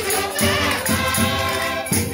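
Several Portuguese diatonic button concertinas playing a lively folk tune together, with a steady bass pulse about twice a second and voices singing along.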